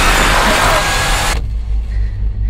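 A loud rushing burst of noise as white paint is flung over an invisible figure, a trailer sound effect that cuts off suddenly about one and a half seconds in. A deep low rumble carries on beneath and after it.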